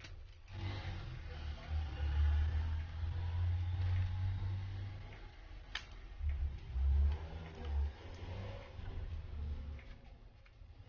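Handling noise from hands stretching rubber bands around a smartphone to clamp its glued back cover: uneven low rumbling and rubbing, with one sharp click about six seconds in.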